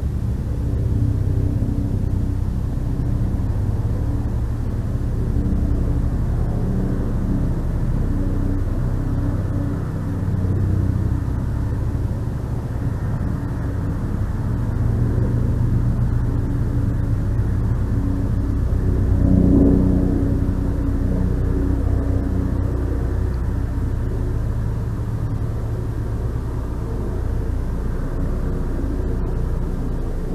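A steady low rumble with a droning hum, swelling briefly about two-thirds of the way through.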